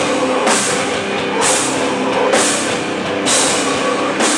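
Live hardcore metal band playing: distorted electric guitars over a drum kit, with a crash cymbal struck about once a second.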